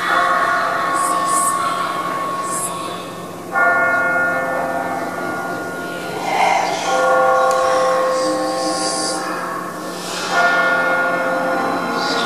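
Deep bells tolling in the show's soundtrack. There are four strikes about three and a half seconds apart, and each rings out and fades before the next.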